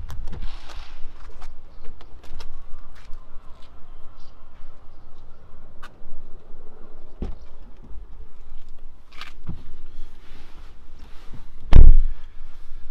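Car door of a 2017 Volvo XC90 being opened and clicks and knocks of someone getting in, then a loud, heavy thump near the end as the door is shut.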